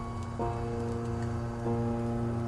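Soft, slow piano music: a chord struck about half a second in and another shortly before the end, each left to ring.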